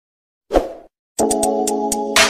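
A short plop sound effect about half a second in, then background music with a clicking beat starting just after a second in.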